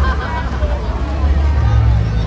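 Low steady rumble from a passing river tour boat, under the chatter of many voices.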